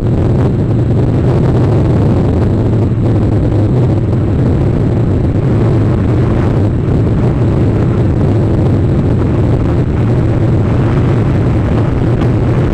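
Wind buffeting the outdoor nest camera's microphone: a loud, steady low rumble.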